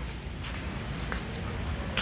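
Light shuffling steps and faint clicks on a concrete floor over a low, steady rumble.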